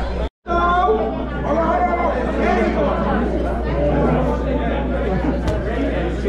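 Overlapping chatter of several people in a large hall, over a steady low hum. The sound cuts out completely for a moment about a third of a second in.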